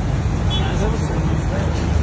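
Faint background talk over a steady low rumble.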